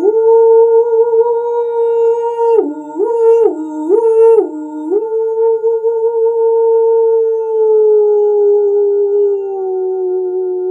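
A woman's voice toning a long sustained "ooo" over the steady ring of a singing bowl; midway her pitch drops to a lower note and back three times, then slides slowly down near the end.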